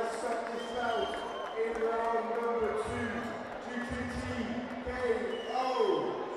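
Men's voices in long held notes with short pitch glides, like a crowd chanting or singing, with no clear words.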